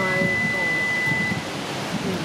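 A single steady high-pitched tone, like a beep or whistle, held for about a second and a half before stopping, over a constant background hiss of outdoor noise. It is loud enough to distract the talkers, who remark on the sound right after.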